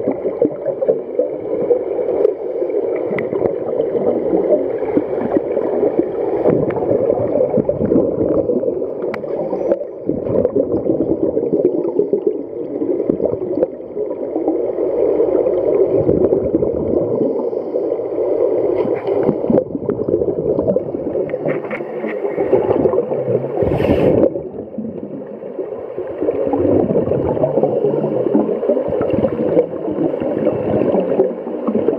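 Scuba regulator exhaust bubbles heard underwater: a continuous low bubbling gurgle with a few brief lulls. One sharp click about three-quarters of the way through.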